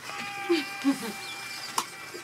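Beat starting up over the studio monitors: a few steady held synth tones with soft low blips, and a sharp click near the end.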